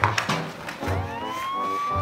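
A siren wail sound effect that rises in pitch from about a second in and then holds at a steady pitch, over background music with a steady beat.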